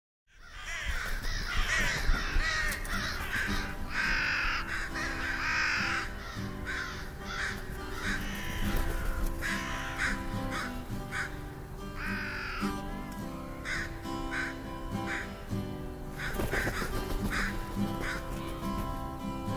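A flock of crows cawing over soft held orchestral notes, the introduction to the lullaby. The calls are dense at first, then come singly about a second apart, and there is a short flurry near the end.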